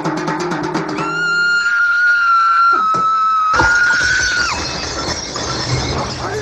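Film trailer soundtrack: music, opening with a rapid drum roll, then a long, high, held shriek from about a second in. About three and a half seconds in, a loud crash of noise joins the shriek; this is the boy's scream that breaks glass.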